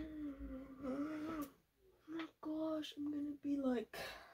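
A woman humming a short wordless tune: one long held note, then four short notes, the last sliding down in pitch.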